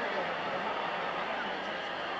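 Boxing arena crowd noise: a steady hubbub of many voices with no single loud event.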